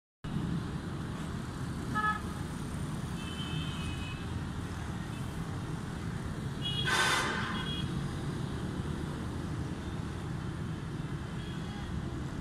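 Steady low rumble of distant road traffic, with short vehicle horn toots about two seconds in and again around three to four seconds, and a louder horn blast about seven seconds in.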